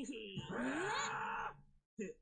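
Anime voice acting in Japanese: characters exclaiming in surprise, with a drawn-out rising "huh?" that stops about one and a half seconds in.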